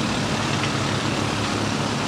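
Steady vehicle engine and road noise: a low, even rumble under a broad hiss.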